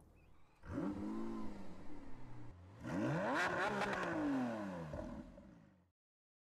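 A car engine revving twice as a logo-sting sound effect. Each rev rises and then falls in pitch, and the second is longer and slightly louder than the first.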